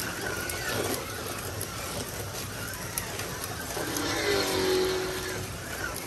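1/24 scale Carrera Digital slot cars running on a plastic track: a steady whir of small electric motors and tyres in the slots.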